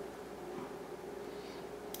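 Quiet room tone with a steady low hum, and a faint rustle from a piping bag being squeezed as buttercream icing is piped onto a cookie.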